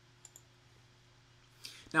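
Near silence with a faint steady low hum, broken by two faint short clicks close together about a quarter of a second in. A breath and the start of a man's speech come at the very end.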